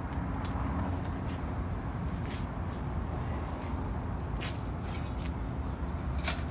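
A steady low background rumble, with a few short light clicks and rustles from asphalt shingles and a sheet-metal flashing being handled.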